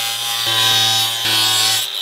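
Milwaukee cordless compact cut-off tool running, its abrasive disc spinning with a steady high whine that breaks off for a moment about halfway through.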